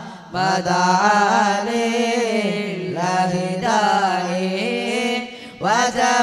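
Arabic devotional chanting of salawat in praise of the Prophet Muhammad: one voice sings long, ornamented notes that bend up and down, with short breaks about a third of a second in and again near the end.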